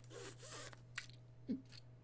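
Quiet room with faint rustling and scraping, a single short click about a second in, and a steady low hum underneath.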